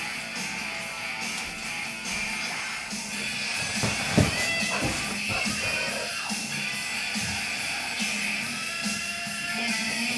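Live rock music with electric guitar, playing from a television. There is one brief knock about four seconds in.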